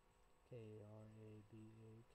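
A man speaking quietly in slow, drawn-out syllables: one long syllable about half a second in and a shorter one near the end.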